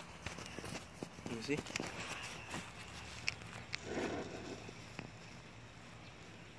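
Footsteps on grass with scattered light knocks and clicks of handling, and a brief spoken word about a second in and another short voice sound a few seconds later.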